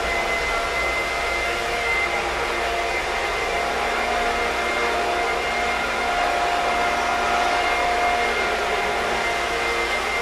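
A steady rushing noise with a few faint steady tones in it, as from a fan or blower running, a little louder from about six to eight seconds in.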